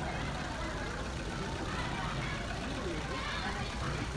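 Scattered voices of people talking among themselves over a steady low background rumble.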